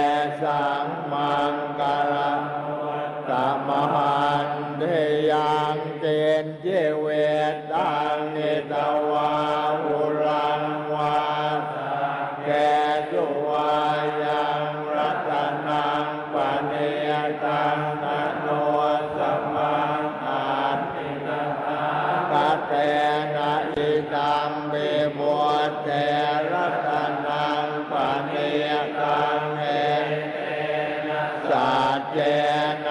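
A large group of Thai Buddhist monks chanting Pali blessing verses in unison, a continuous recitation held on one low, nearly level pitch.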